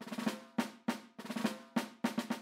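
Drum roll sound effect: a run of sharp drum strokes, one about every third of a second, with quick clusters of hits between them. It is a drum-roll cue for suspense before a reveal.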